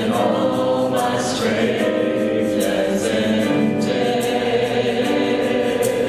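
Church choir singing a gospel song in held chords with a worship band accompanying, a steady beat ticking through.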